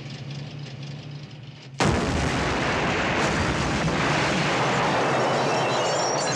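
Film-soundtrack bomb explosion on a street: a sudden loud blast about two seconds in, followed by several seconds of sustained roaring noise. Before the blast there is a low steady hum.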